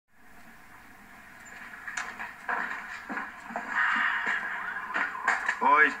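Television drama sound played through a TV speaker into a room: a faint murmur of background voices that grows louder, with a few light knocks, and a man calling out near the end.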